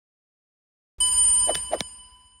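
A bright metallic bell-like ding that starts suddenly about a second in and rings away, with two short clicks over it.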